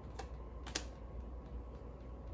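Two sharp clicks on a tabletop from things being handled on the reading table, a light one then a louder one under a second in, over a low steady hum.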